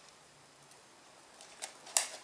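Near silence with faint room hiss, then a few soft ticks and one sharp click near the end.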